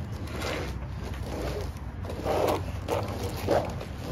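Fire hose being folded by gloved hands: a few short scuffs and rubs of the hose jacket, over a steady low hum.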